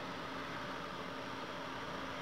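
Steady background hiss with a faint, even low hum: the recording's room tone, with no distinct event.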